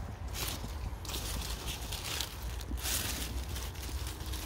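Strawberry leaves and stems rustling and crackling as a hand rummages through the plants, in irregular short scrapes.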